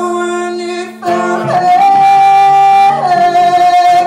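Male singer holding long, loud sung notes over an acoustic guitar, live: a first note, a brief dip about a second in, then a long steady note and a slightly lower one near the end.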